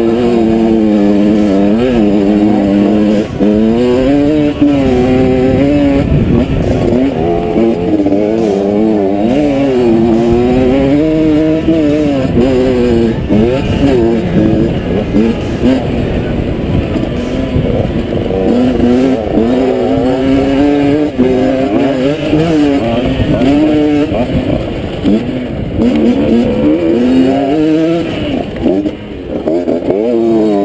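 Two-stroke dirt bike engine on the move, its pitch rising and falling over and over as the throttle opens and closes and the gears change. Low rumble from the ride runs underneath.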